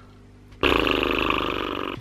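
A man's long, low, croaky groan of exasperation, starting about half a second in and lasting well over a second.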